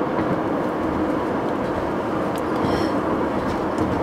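Steady road and engine noise inside a moving car's cabin: an even low rumble with tyre hiss.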